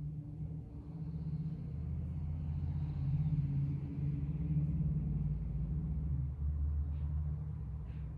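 A low rumble that builds from about a second in, is loudest in the middle and eases off near the end.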